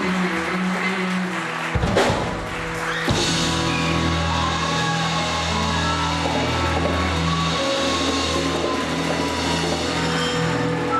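Live band with electric and acoustic guitars, bass, keyboard and drums playing. Two sharp drum hits about two and three seconds in, then long held chords ring on.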